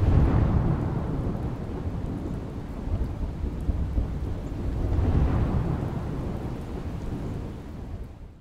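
Thunder rumbling over rain: a deep roll that comes in suddenly at the start, swells again about five seconds in, and fades out near the end.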